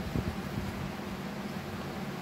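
Steady low room hum over a soft hiss, with faint rustling of a garment being handled near the start.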